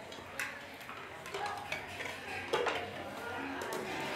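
Spoons and plates clinking in scattered, irregular clicks as several people eat, with low talk under it.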